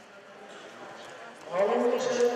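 Low hum of a sports hall, then, about one and a half seconds in, a man's loud sustained shout rings out through the hall.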